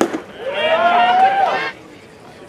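A baseball bat cracks sharply against a pitched ball. About half a second later a person lets out one long shout of over a second, rising slightly in pitch.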